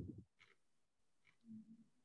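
Near silence: room tone over a call line, with the end of a spoken word at the very start and a faint short hum about one and a half seconds in.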